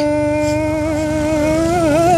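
A voice holding one long sung note in a Mường folk song, steady, with a slight waver near the end.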